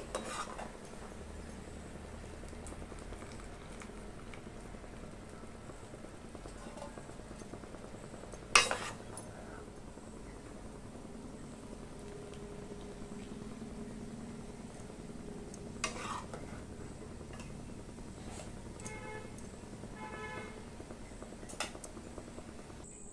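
Kitchen utensils working a pan of freshly boiled instant noodles as they are lifted out of the hot water and strained, over a steady low background. A sharp metal clink against the pan comes about a third of the way in, softer knocks follow later, and two short ringing notes sound shortly before the end.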